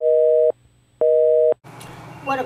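Telephone busy signal: two beeps of a steady two-note tone, each about half a second long and half a second apart.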